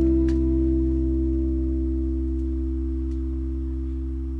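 Closing chord of a nylon-string classical guitar ringing on and slowly dying away, with a couple of faint clicks.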